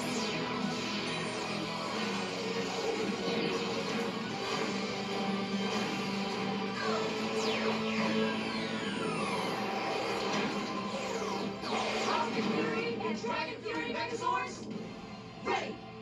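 Dramatic theme music from a TV show's zord-formation sequence, with effects sweeping up and down in pitch around the middle and again near the end, played through a television's speakers.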